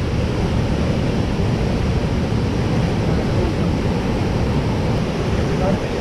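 Steady rush of a small waterfall pouring into a rock pool, with a low rumble of wind on the microphone.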